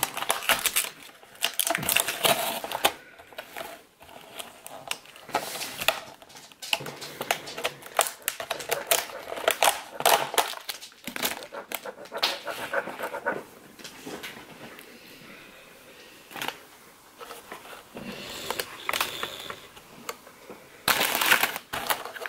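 Thin clear plastic clamshell container being handled and pried at to open it: the plastic crackles and clicks irregularly, with a few sharp snaps and a louder burst near the end.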